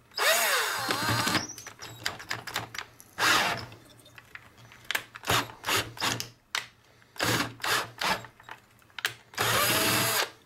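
Power drill boring a hole through the LDG Z-817 tuner's end panel with a twist bit, run in a series of short trigger bursts. The motor's pitch swings up and down within the longer bursts near the start and near the end, with clicks from the bit catching in between.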